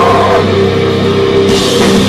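A heavy rock band playing loud and live on electric guitars, bass and a drum kit. Cymbals come in about one and a half seconds in.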